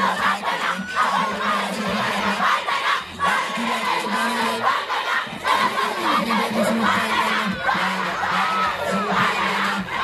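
Large crowd shouting and cheering continuously, many voices overlapping, with a steady low tone underneath.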